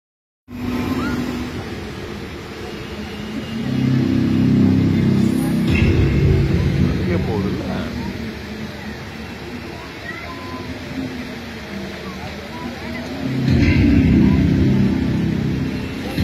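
Water-fountain show heard at close range: a loud, low rumbling din, heavily overloaded on the recording, swelling twice with deep steady tones, with people's voices mixed in.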